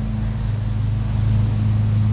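A steady, low mechanical hum at a constant pitch, from a motor or machine running.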